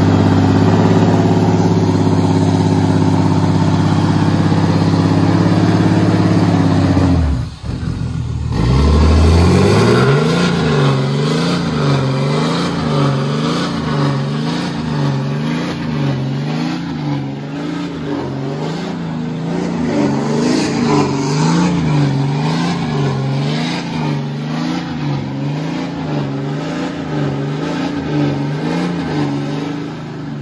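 Ram heavy-duty pickup's engine held at high revs while its tyres spin in a burnout, dropping away briefly about seven seconds in, then revving up and down in a regular rise and fall, about once a second, as the burnout goes on.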